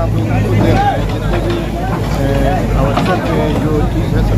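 A Caterpillar backhoe loader's diesel engine running with a steady low hum, under people's voices.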